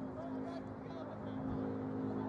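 A steady motor hum that grows a little louder about a second in, with faint distant voices.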